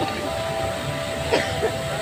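Fountain water jets spraying, a steady rushing hiss, with a long steady tone held over it. A brief sharp sound cuts in about one and a half seconds in.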